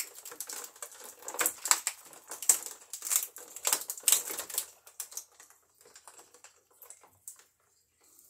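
Clear plastic blister packaging crackling and clicking as small action-figure accessories are worked out of it: irregular quick clicks, thick for the first few seconds, then thinning out and stopping shortly before the end.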